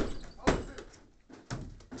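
Heavy footsteps and knocking of gear as armed men push through a freshly rammed-open wooden door, with the ring of the ram's blow dying away at the start. There is a sharp knock about half a second in, a short lull, then a quick cluster of knocks and clicks near the end.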